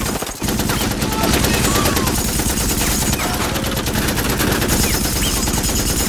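Long run of rapid automatic gunfire, shots too fast to count, loud and continuous apart from a brief break just after the start.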